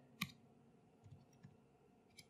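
Faint clicks of computer keyboard keys being typed: one sharper click about a quarter second in, then a few softer taps.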